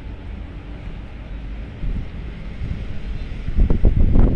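Wind buffeting the microphone as a low, uneven rumble, gusting louder near the end.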